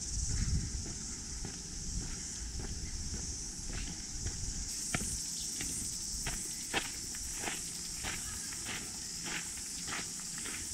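Footsteps on a paved garden path, evenly paced at a little over one and a half steps a second in the second half, over a steady high-pitched insect chorus.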